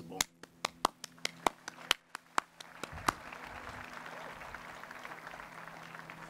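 Hand claps: a quick run of sharp, separate claps close by, about four or five a second, joined from about halfway by a steady spread of crowd applause.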